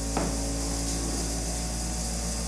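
A steady low electrical-sounding hum with a constant drone and hiss, and a faint tap just after the start.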